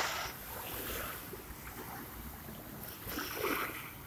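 Small sea waves washing in at the shoreline, in two swells, one fading just after the start and another about three seconds in.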